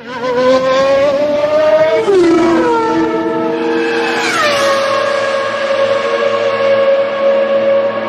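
Outro sound effect: a pitched tone that rises slowly, drops in pitch about two seconds in and again about four seconds in, then holds steady.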